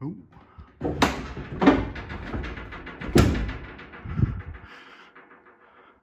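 Loud metal bangs, three about a second apart with ringing and a smaller one after, over a low drone that stops about four and a half seconds in, as the Tesla Model 3 battery pack is separated from the car body. The pack binds: bolts through the cradle that were undone but not removed have caught on their threads.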